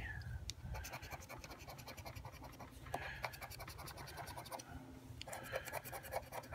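A scratch-off lottery ticket's coating being scraped with a small flat tool: many quick, faint scraping strokes in short runs, uncovering the symbols.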